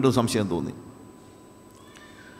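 A man preaching in Malayalam through a microphone, his phrase ending under a second in, followed by a pause of quiet room tone with a faint steady tone and a brief faint high-pitched sound near the end.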